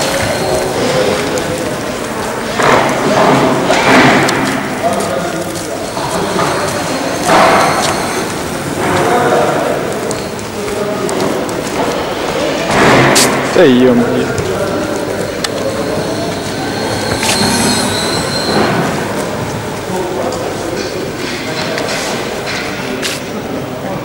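Indistinct voices and general room noise echoing in a large hall, with no clear motor sound: the electric hub motor is described as running practically silently.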